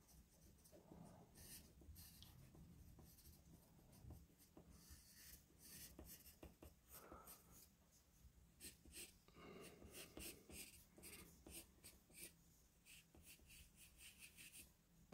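Faint scratching of a pencil drawing on paper, in many short, irregular strokes.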